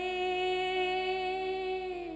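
A woman's singing voice holds one long note in a Gujarati devotional folk song. The pitch stays nearly level and eases downward right at the end.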